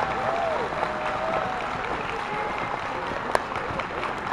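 Audience applauding steadily, with a few voices calling out in the crowd and one sharp knock near the end.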